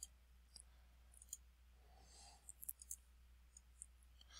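Near silence with a few faint, scattered computer mouse clicks over a low steady hum.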